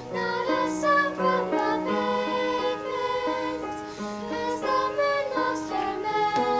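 Small children's choir singing a song, the voices holding notes and moving from note to note without a break.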